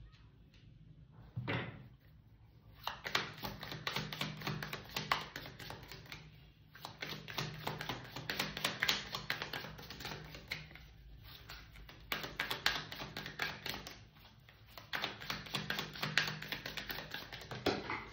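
A tarot deck being shuffled by hand: rapid flicking and rustling of cards in four runs of a few seconds each, with short pauses between them. A single soft knock about a second and a half in.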